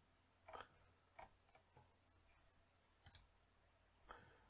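Near silence with a few faint computer mouse clicks, the last a quick double click about three seconds in.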